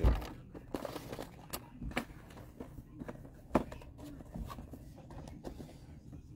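Handling noise at a sewing table: a dozen or so light knocks and clicks at uneven intervals as hands move about the sewing machine and the things around it, with a duller thump at the start.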